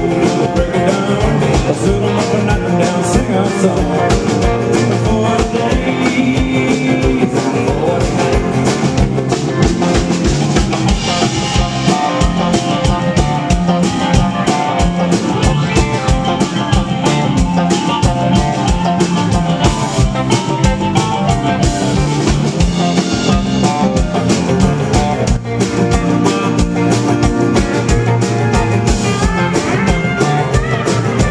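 A live Americana rock band playing: a drum kit keeping a steady beat under electric and acoustic guitars.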